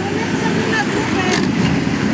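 Indistinct overlapping voices over steady street and vehicle noise, with a brief click about a second and a half in.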